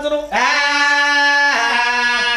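A man's voice singing a long held note in Oggu Katha folk-narrative style, sliding up into it, then stepping down to a lower held note about one and a half seconds in.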